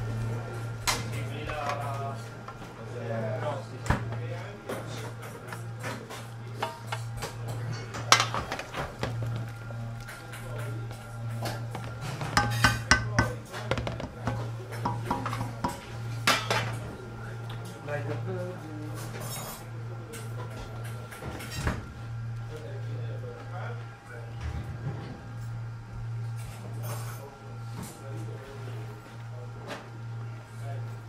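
Metal utensils clinking and scraping against a stainless steel sauté pan while pasta is finished in its sauce, with scattered sharp clinks, the loudest about eight and thirteen seconds in, over a steady low hum.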